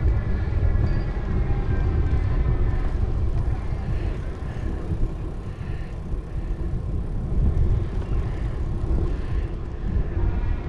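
Wind buffeting the microphone of a camera on a moving bicycle, a loud uneven low rumble, with some tyre noise from the paved path under it.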